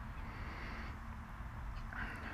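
Faint, steady outdoor background noise with a low rumble and no distinct event.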